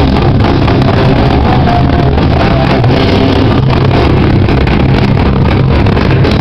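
Metallic crust punk band playing live: distorted guitars and bass over drums, a dense, unbroken wall of sound that overloads the camera's microphone.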